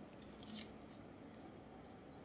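Near silence with a few faint, brief ticks and rustles: a paper banknote being handled in gloved hands.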